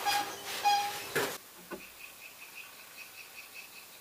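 Cloth rustling with two short high squeaks, then from about a second and a half in, faint insect chirping: one high note pulsing about six times a second.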